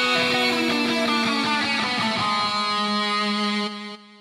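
Guitar notes from a hip-hop beat ringing on alone with the drums and bass dropped out, a new chord struck about two seconds in, then fading away near the end.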